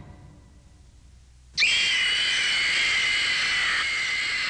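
A woman's long, high-pitched scream of terror. It starts suddenly about one and a half seconds in, after a quiet moment, and is held at a steady pitch.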